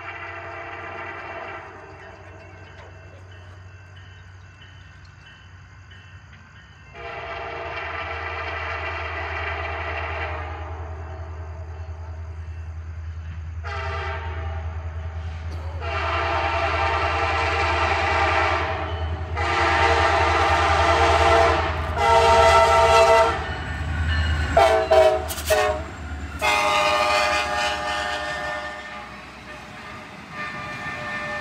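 An approaching train's locomotive air horn sounds a run of blasts, long and short, that get louder as it nears, with a few choppy short toots near the end. A low locomotive rumble grows under the horn as the train draws close and passes.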